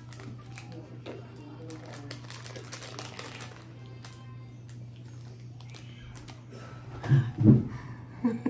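A candy's plastic wrapper crinkling in short crackles for the first few seconds as it is peeled off by hand, over a steady low hum and background music. A short loud burst comes about seven seconds in.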